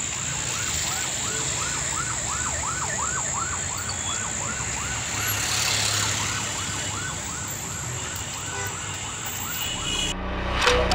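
Electronic siren in a fast yelp, its pitch rising and falling about three times a second, over the low rumble of slow road traffic.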